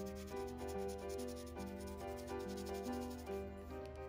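A colored pencil rubbing across drawing paper in quick repeated shading strokes, laying red onto a pear drawn in crayon and marker. Background music with stepping notes plays underneath.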